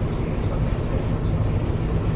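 Steady low rumble of background noise, with a few faint soft steps.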